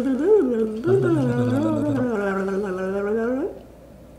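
Human voices holding a long, wavering, hummed or sung sound, a suspense-style vocalizing with no words. A lower second voice joins for about a second, and the sound stops about three and a half seconds in.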